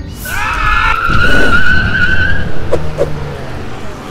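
Tyre-screech sound effect: a quick whoosh, then a long high squeal of about two seconds over a low rumble, followed by two short clicks.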